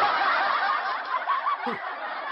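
Snickering laughter, a run of quick muffled giggles that gradually fades.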